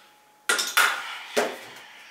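An aluminium drink can being set into a refrigerator, clinking and clattering sharply against the shelf three times within about a second, each knock with a short ring.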